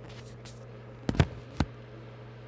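Handling noise from a phone held in the hand: a few sharp knocks and bumps about a second in, then one more shortly after, over a steady low hum.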